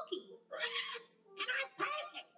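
Cartoon parrot character speaking in a squawky, screechy parrot voice: two short calls about half a second apart.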